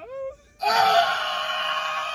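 A person's brief cry, then after a short pause one long, high, drawn-out wail starting about half a second in and held steady.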